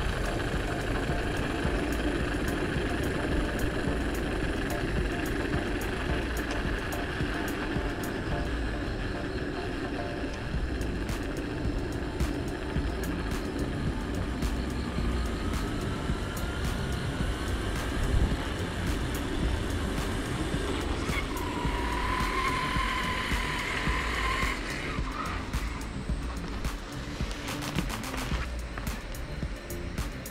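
Steady rush of wind and rolling noise on a moving electric unicycle ridden at speed, with low rumble on the microphone and a faint steady whine. A held higher tone sounds for a few seconds past the middle.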